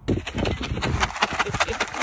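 A plastic dog-treat bag being shaken, giving a fast, irregular run of crinkling crackles.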